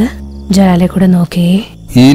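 A woman's voice in a few short, separate syllables, a cartoon character's dubbed voice.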